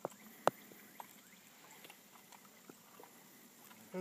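Quiet handling clicks: one sharp click about half a second in, then a few lighter clicks, as a handheld fish scale is fitted to a bass's mouth.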